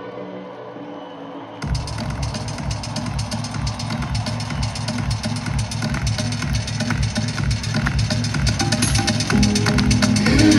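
Live stadium concert music over the PA: a soft passage of held tones, then about two seconds in a loud, fast electronic drum beat with heavy bass kicks in and builds.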